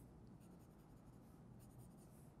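Faint scratching of a colored pencil shading on paper, drawn lightly to lay down a base coat of color.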